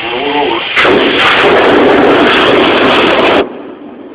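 A submarine diesel engine being started: a very loud, even rush of noise begins abruptly about a second in, lasts under three seconds and cuts off suddenly, leaving a much quieter steady hum.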